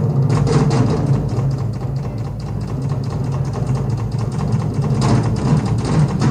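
Live drum solo: drums played in a fast, continuous roll, with the low drums giving a heavy steady rumble under dense rapid strokes. There is a brief slight dip in level around the middle.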